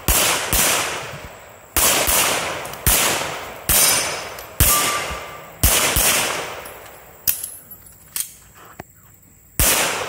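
A 9mm Sig Sauer P320 X5 Legend pistol fitted with an Armory Craft muzzle brake, fired about ten times at roughly one shot a second with uneven gaps. It is shooting heavy 147-grain ammunition, and each shot trails off in a long echo.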